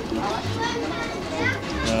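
Background voices, unclear and lighter than the interview speech, over faint music.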